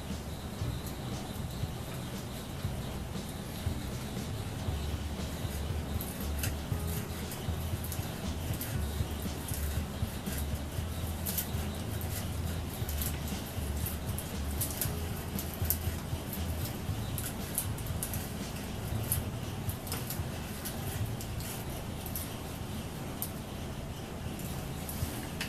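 Hand brace boring a freshly sharpened auger bit into a block of wood: a steady creak and crackle of the cutting edges shaving the wood, with many scattered sharp ticks, over a low hum.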